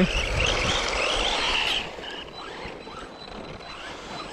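Arrma Typhon 3S RC buggy's electric motor whining under throttle as its ballooned tyres churn through snow, the whine wavering in pitch, then easing off and dropping away about two seconds in.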